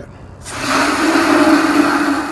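Water spraying hard from a garden-hose spray nozzle into the metal basin of an evaporative (swamp) cooler to fill it. The steady hiss of the spray starts about half a second in.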